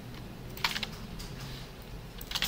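Computer keyboard keys pressed a few times in short sharp clicks, clustered about half a second in and again just after a second in, as code is copied and edited.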